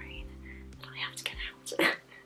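A woman's breathy, whispered vocal sounds, loudest shortly before the end, over soft background music with steady low notes.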